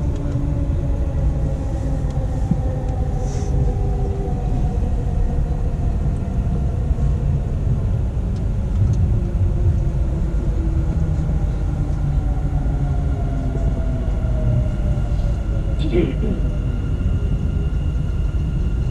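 Dubai Metro train heard from inside the carriage: a steady low rumble with a faint motor whine that slowly falls in pitch as the train slows into a station. A brief squeal comes near the end.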